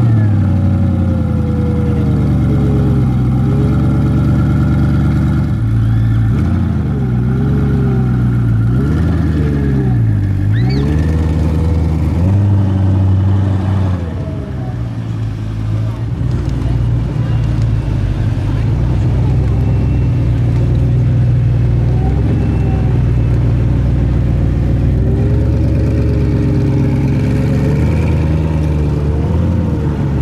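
Koenigsegg Regera's twin-turbo V8 running just after start-up, with the revs swinging down and up several times in the first half, then holding steady.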